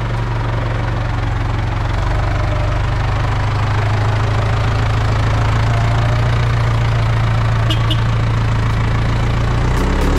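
Farm tractor's diesel engine running steadily at low revs, getting gradually louder as the tractor pulls slowly forward out of the shed.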